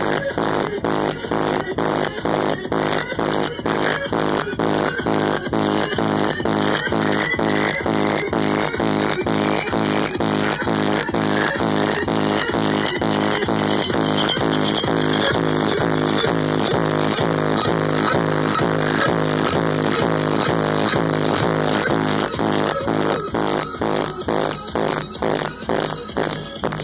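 Electronic dance music played very loud through a competition SPL car-audio system with a subwoofer wall. It carries a fast steady beat, a little over two hits a second, and a synth line that sweeps upward in pitch through the middle.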